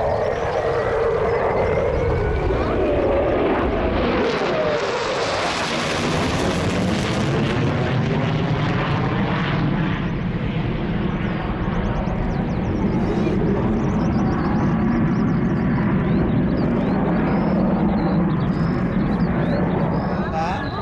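Loud jet noise from an F-15 fighter's twin turbofan engines as it flies a display pass overhead. The pitch falls over the first few seconds, the noise is loudest and hissiest around five to eight seconds in, then it settles into a steady rumble with a slowly wavering, phasing sound as the jet turns.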